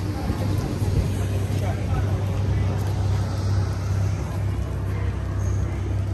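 Busy town-centre street ambience: a steady low hum of road traffic under the voices of passers-by.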